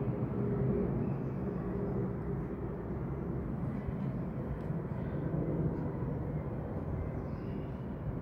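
Steady low rumble of distant engine noise in the open air, with a faint held hum in it.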